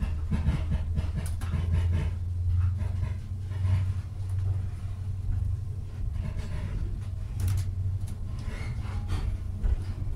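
Low steady rumble of an HST train heard from inside a Mark 3 coach as it pulls out of a station and gets under way, the Class 43 power car's diesel engine under it, with scattered clicks and knocks from the wheels and coach body.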